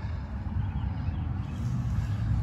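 Low, steady rumble inside a truck cab, with no other distinct sound.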